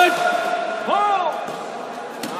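A sharp crack of a badminton racket smashing the shuttlecock right at the start, as a long shout of "Good!" ends, then a short rising-and-falling call from a voice about a second in.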